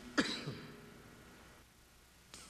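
A person clearing their throat once: a short, sharp sound near the start that fades within about half a second.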